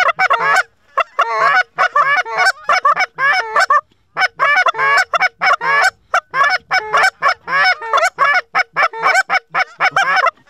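Hand-blown goose calls working a circling flock: a fast, loud string of honks and clucks, about three to four notes a second, with a short break about four seconds in.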